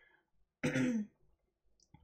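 A person clearing their throat once, briefly, just over half a second in.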